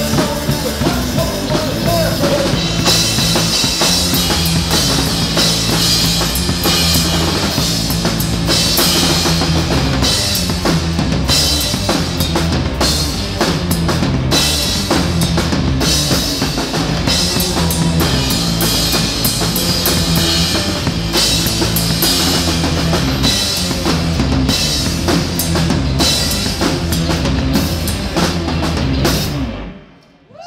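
Live rock band playing: a drum kit with dense kick, snare and cymbal hits over a moving electric bass line. The song stops just before the end.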